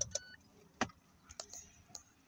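A few faint, sharp clicks and taps inside a car, about five spread over two seconds, with a brief high beep at the very start.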